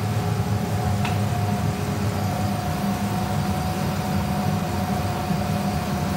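Steady low hum of a walk-in cold room's three-fan Buffalo Trident evaporator running, with a faint steady whine above it. A single light click about a second in.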